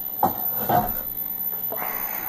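Handling noise from a camera being moved and repositioned close to a guitar: a few irregular rubbing and bumping noises.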